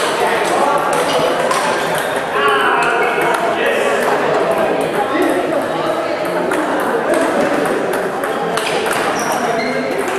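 Table tennis balls clicking irregularly on bats and tables, with people talking over them, clearest a few seconds in.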